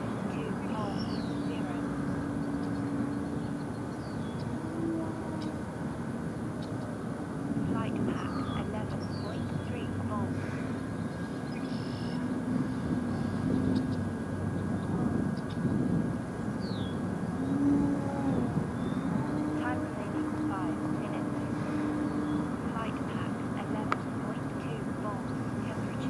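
Electric motor and propeller of a radio-control Edge 540T aerobatic plane in flight, a steady drone whose pitch shifts up and down several times as the motor speed changes, over a steady rush of wind noise.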